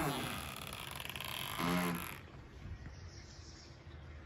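Studio-shed door being opened and pushed through: a creak falling in pitch, a rustling scrape for about two seconds, and a short low groan near the end of it.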